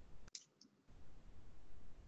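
Computer mouse clicks heard over a video call: one sharp click about a third of a second in and a fainter one just after, over a low hum of open-microphone background noise that drops out for a moment after the click.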